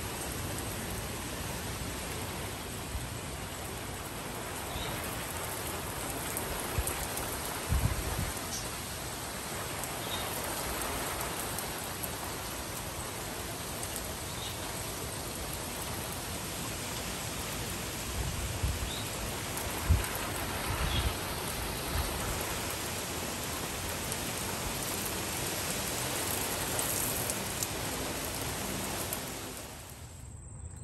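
Steady heavy rain falling on trees and a wooden deck, an even hiss throughout. A few short low thumps break through, the loudest about eight seconds in and about twenty seconds in.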